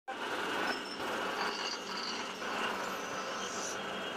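Steady machine noise from a rotary bottle turntable running, with a few brief high clinks of amber glass bottles knocking together on its table.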